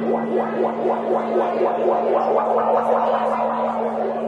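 Amplified electronic drone: a steady low hum held under a fast, evenly pulsing warble, from the band's instrument and effects gear.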